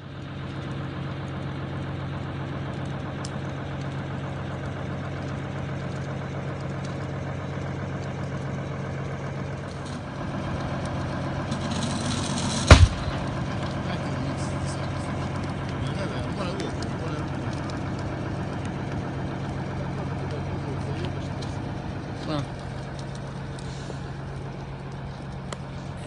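A steady engine hum, like a motor idling, runs throughout. About thirteen seconds in comes one sharp, loud bang, just after a brief hiss.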